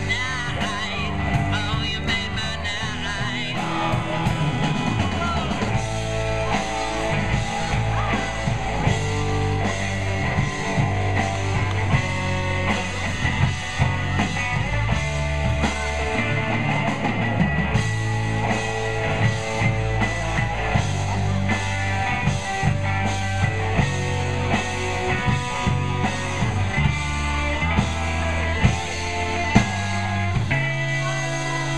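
Live rock band playing a song: electric guitars, bass guitar and drum kit together, at a steady full level.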